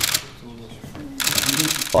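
Camera shutters firing in rapid bursts: a short burst at the start and a longer one from a little past a second in, over low voices in the room.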